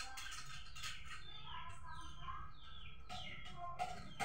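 Birds chirping faintly in the background, a string of short falling chirps repeating every half second or so, over a steady low rumble.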